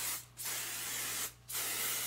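Aerosol hairspray (Kenra Volume Super Hold Finishing Spray) sprayed from the can onto curled hair in short hissing bursts of about a second each, with brief breaks between them.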